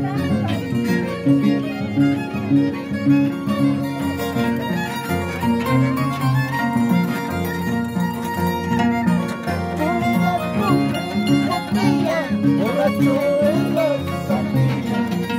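Live Andean folk dance music: an Andean harp is plucked, its bass notes keeping a steady dance rhythm, while a violin plays the melody over it.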